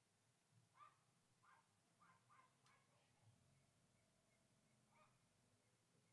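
Near silence with a dog barking faintly: a handful of short barks through the first half, and one more about five seconds in.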